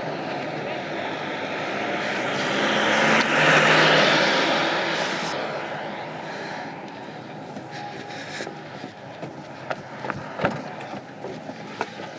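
A vehicle driving past on the road: its noise swells to a peak about four seconds in and then fades away. A few sharp clicks and knocks follow near the end.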